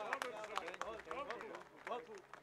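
Scattered applause from a seated audience, irregular individual claps, with voices talking underneath.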